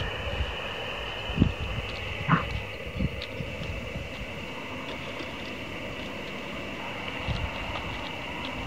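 Steady hiss from a portable ham radio transceiver's receiver while it listens on an open frequency, with no station answering the call. Wind rumble on the microphone and a few soft thumps lie under it.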